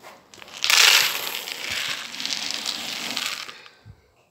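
Dry cat kibble being poured from a container into a bowl: a rattling rush of pellets that starts about a second in, is loudest at first, and tapers off near the end.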